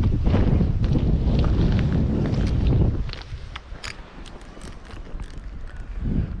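Wind buffeting the microphone with a heavy low rumble that drops away sharply about three seconds in, leaving a quieter stretch with scattered light clicks.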